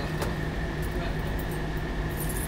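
Plastic cling wrap being peeled off a car body, giving a few faint crackles over a steady background hum.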